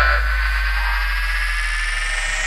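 Psytrance breakdown with no kick drum: a held deep synth bass note slowly fades under a hissing synth sweep, with a faint high tone gliding slowly upward.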